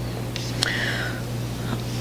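A pause in a talk: a steady low electrical hum through the lectern microphone, with a faint breath from the speaker about half a second in.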